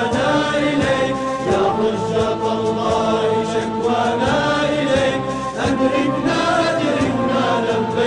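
Arabic devotional chant sung over a musical backing, voices holding long notes in a continuous, steady flow.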